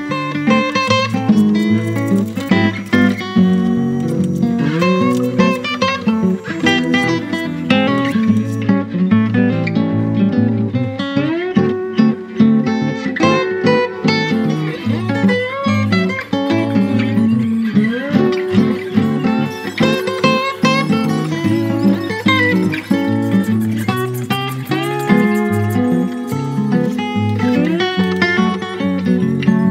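Background music: a plucked guitar playing a continuous melody, with some notes sliding in pitch.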